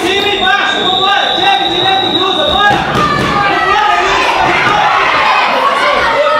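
Voices calling and chattering in an echoing hall, with dull thuds of gloved punches and kicks landing on padded chest protectors. A steady high tone sounds for about the first three seconds.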